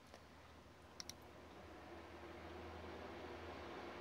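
Two quick computer-mouse clicks close together about a second in, over a faint steady low hum.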